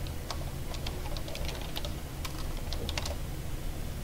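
Computer keyboard typing: a run of irregular, quick keystrokes as a line of code is entered.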